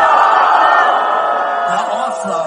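Concert crowd shouting together in one long, loud yell, many voices held at once.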